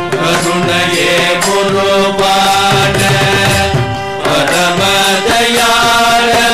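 Carnatic devotional bhajan music: singing over mridangam and kanjira drumming. The music dips briefly about four seconds in before carrying on.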